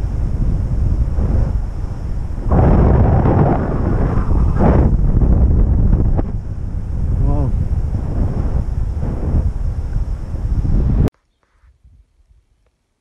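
Wind buffeting the camera microphone of a paraglider in flight: a loud, gusty rumble that cuts off suddenly near the end.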